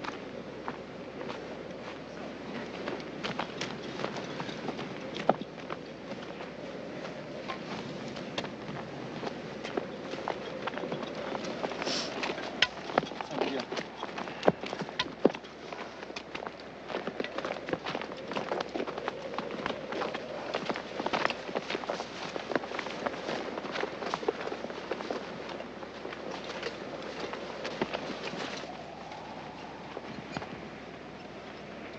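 Footsteps of a group walking on a dirt and gravel path: many irregular crunching steps over a steady noisy background.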